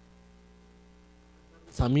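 Faint steady electrical hum on the audio line, with no other sound. A man starts speaking near the end.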